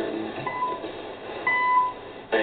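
Hourly time-signal pips on a shortwave radio broadcast: a short high beep about half a second in, then a longer final pip about a second later marking the top of the hour. Faint music sits underneath, heard through the narrow, muffled sound of shortwave reception.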